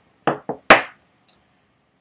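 A glass tumbler set down on a wooden surface: three quick knocks within the first second, the third the loudest.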